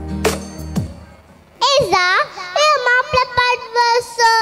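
Electronic dance music with heavy bass drum hits fades out over the first second and a half. Then a young girl's voice comes in loud over a microphone in long, drawn-out notes that glide up and down, singing the opening of a Mappila song.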